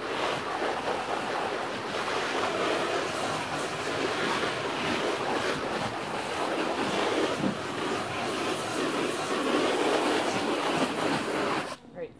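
Garden hose spray nozzle spraying water onto the vinyl floor of an inflatable kids' pool, a steady hiss and splatter that comes on abruptly and cuts off near the end.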